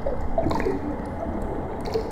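Underwater bubbling sound effect: a low rumble with a few small bubble blips, a cluster about half a second in and another near the end.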